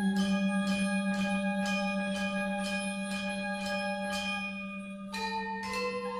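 Gamelan music: a deep gong tone rings on and slowly fades with a wavering pulse, while bronze percussion strikes notes about twice a second. Near the end the strikes pause briefly and new, higher notes come in.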